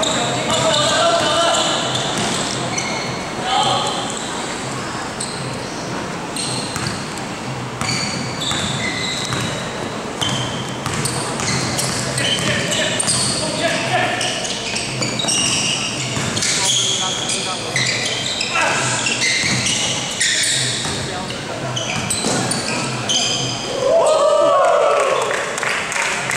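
Basketball game on a gym court: the ball bouncing as it is dribbled and sneakers squeaking in short, high chirps on the floor, with the sound echoing around the hall.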